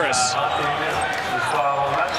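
Basketball game sound from the court: a ball bouncing on the hardwood floor under steady arena crowd noise, with a voice briefly heard.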